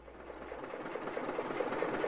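Engine sound effect for an early motorcar, a Ford Model T, running with a quick, even ticking and fading in steadily from quiet.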